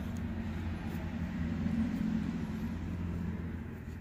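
Air-conditioning condensing unit running with a steady low hum.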